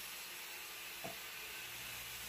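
Faint steady hiss with a low hum, and one soft click about a second in.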